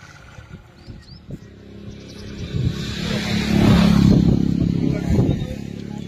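A motor vehicle engine getting louder over a few seconds, loudest about four seconds in, then fading, with voices around it.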